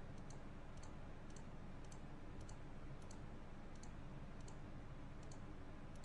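Faint steady low background hum with light, short high-pitched ticks at an even pace of about two a second.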